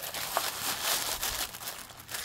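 Organza gift bag and the pearlescent tissue paper wrapped inside it crinkling and rustling as hands squeeze and work the bag open.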